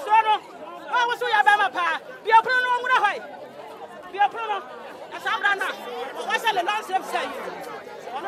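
Speech: a woman talking loudly and animatedly in quick phrases, with short pauses.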